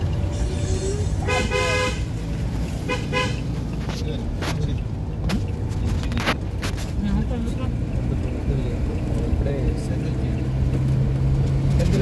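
Steady engine and road rumble heard from inside a moving car, with a vehicle horn honking twice: a longer blast about a second in and a shorter one about three seconds in.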